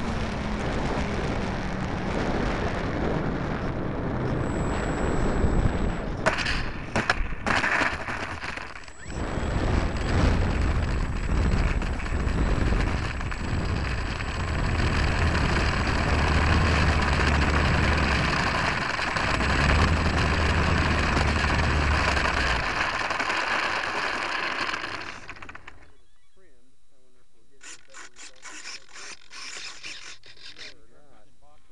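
Rushing wind and propeller noise from an 800mm Corsair RC model plane in flight, picked up by a small camera riding on the plane, with a few sharp crackles early on. The motor and wind noise drop away suddenly near the end, leaving a quieter hiss with faint clicks.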